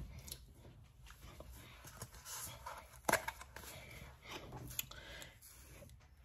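Faint scattered clicks and knocks of things being handled in a kitchen, the loudest about three seconds in.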